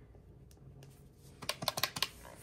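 Keys of a desktop calculator with round keyboard-style keycaps being pressed: a quick run of about five clicks in the last half second, entering a subtraction of $20 from 243 to leave 223. Before that there is only a faint quiet stretch.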